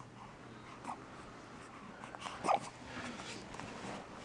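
Faint, short squeaks and small vocal sounds from a young baby, with the loudest brief one about two and a half seconds in.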